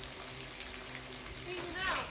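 Water spraying from a garden hose nozzle, a steady hiss with a faint low hum beneath it. A brief voice sound comes near the end.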